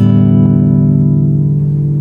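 Background music: one low guitar chord, struck just before and left ringing, fading slowly.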